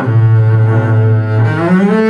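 Double bass played with the bow, holding one long low note for about a second and a half, then moving up to a higher note near the end.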